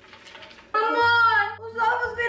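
A high, long-held sung note that starts abruptly about three-quarters of a second in and carries on steadily, after a fairly quiet start.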